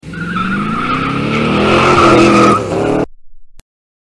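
Cartoon sound effect of a car taking off: the engine revs up with a rising pitch while the tyres squeal, and the sound cuts off abruptly about three seconds in.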